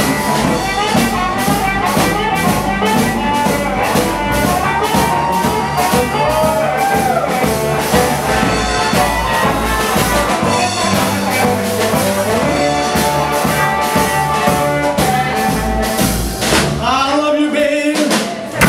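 Live blues shuffle played by a band of Richter-tuned harmonica, electric guitar, upright bass and drum kit, with no vocal. The harmonica leads with bending, horn-like lines over a steady shuffle beat, and the low end thins out near the end.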